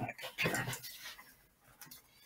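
A few light clicks and rustles of cables and a docking station being handled on a desk, with a short murmur from a man's voice about half a second in.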